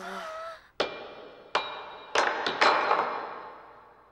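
Five sharp bangs and clatters, as of things knocked over in a dark house. The last three come close together and are the loudest, each dying away slowly with an echo.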